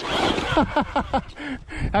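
A man laughing in a quick run of short, falling 'ha' sounds about half a second in, after a brief rush of noise.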